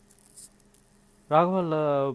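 A short pause holding only a faint steady hum, then a person's voice starts talking a little past halfway.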